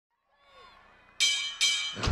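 Faint crowd yells, then two loud, ringing, bell-like hits less than half a second apart, a little over a second in: the opening hits of a competitive cheerleading routine's music mix.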